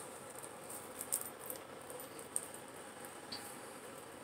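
Faint rustling and a few small scratchy ticks of a sheer ribbon and fabric bundle being handled and untied.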